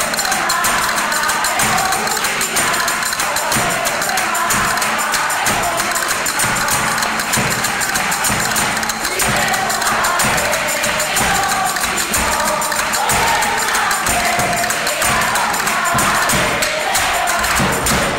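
A group of voices singing to music, with a tambourine jingling steadily throughout.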